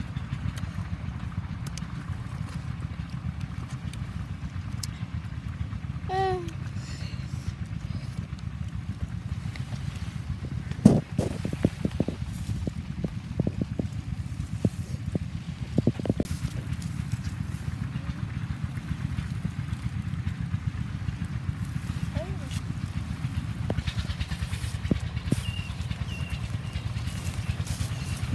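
Low steady wind rumble on the microphone, with a brief voice sound about six seconds in. Near the middle, a sharp crack is followed by about five seconds of irregular clicks.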